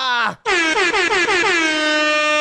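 DJ air-horn sound effect: after a short break, a rapid run of short horn blasts runs into one long held blast.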